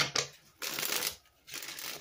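Tarot deck being shuffled by hand: a sharp snap of cards at the start, then two runs of card-shuffling noise with a short pause between them.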